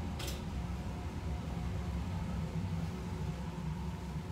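Steady low hum of laboratory ventilation, the fume hood and room exhaust fans running. A short rustle comes about a quarter second in.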